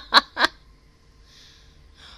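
A woman laughing in a quick run of 'ha' pulses, about four a second, that stops about half a second in.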